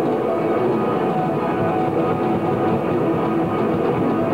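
A live band playing, with guitar and drums, as continuous loud music. The sound is dull, with little treble.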